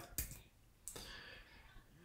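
Two short, faint clicks in a quiet room, one just after the start and a fainter one about a second in, with quiet room tone between and after them.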